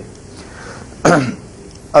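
A man clears his throat once, about a second in: a short rasp that drops into a brief falling vocal sound, within a pause between speakers against low room hiss.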